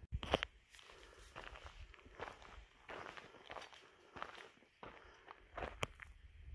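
Footsteps of a hiker walking on a rocky, gravelly mountain trail: faint, short crunching steps at a steady walking pace.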